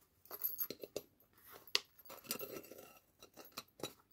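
Faint handling sounds of a cloth-covered card organiser cover and a brass ruler being shifted by hand: soft rustles with a few small clicks and clinks, one sharper click about halfway through.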